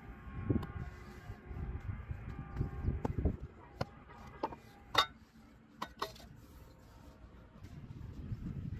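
Wet brick clay slapped and pressed into a metal brick mould with dull thuds, then several sharp metallic clinks as the mould is turned out onto the ground to release a fresh brick, the loudest about five seconds in.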